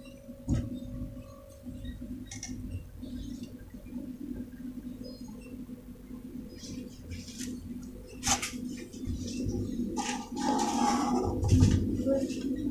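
Faint knocks and clicks of plastic cups and water buckets being handled, with a few light water sounds, over a steady low hum.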